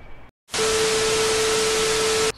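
TV-static sound effect of an editing transition: an even hiss with a steady beep tone under it, starting about half a second in after a brief silence.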